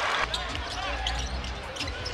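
Basketball being dribbled on a hardwood court in a large arena: a few short knocks under a steady low hum and crowd chatter.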